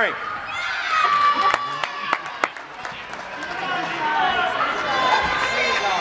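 Parents and children calling out and chattering in an echoing gym during a kids' indoor soccer game, with a few sharp knocks of the ball being kicked about one and a half to two and a half seconds in.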